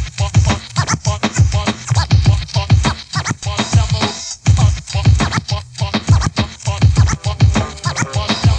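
Old-school hip-hop beat with turntable scratching over a heavy kick drum, no rap vocal.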